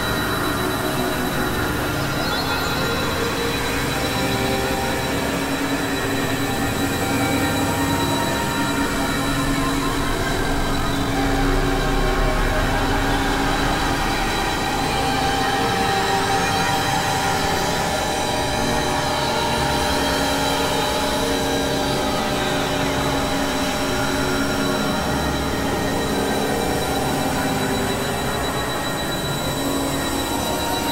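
Experimental electronic drone music: dense layers of held and slowly shifting synthesizer tones and noise, with squealing, metallic high tones over a constant high whine.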